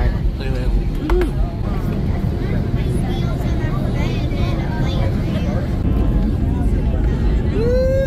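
Steady low rumble of a jet airliner's engines and airflow heard inside the passenger cabin, growing a little louder about six seconds in.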